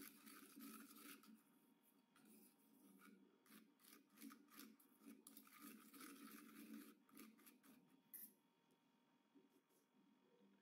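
Near silence, with faint scattered scrapes and clicks of a metal spoon stirring a thick chili paste in a small steel bowl.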